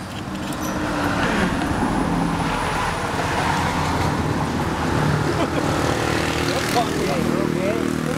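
A small motor scooter engine running nearby, swelling up over the first second and then holding steady.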